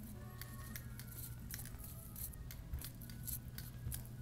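Irregular light clicks and ticks, a few a second, over a steady low hum, with faint music-like tones behind.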